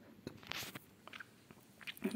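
Faint mouth clicks and small lip noises from a narrator close to the microphone, a few scattered short ticks, with a quick breath in near the end.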